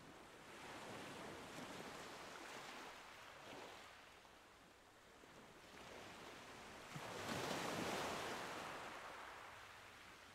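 Faint sound of ocean waves washing in and ebbing, with a larger swell about seven seconds in.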